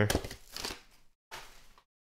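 A few soft clicks and rustles of trading-card packs being handled on a tabletop, fading within the first second. A brief faint rustle follows, with the sound dropping out completely before and after it.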